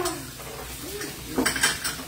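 A brief clatter of kitchenware, dishes and utensils knocking together on a kitchen counter, about one and a half seconds in.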